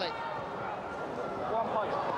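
A man's voice talking over a steady background of outdoor stadium noise.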